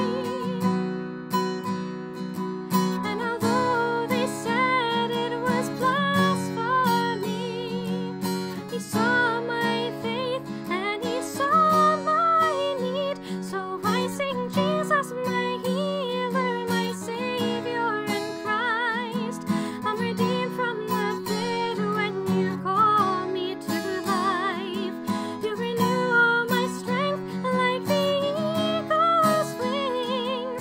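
A woman singing with vibrato, accompanying herself on a strummed acoustic guitar.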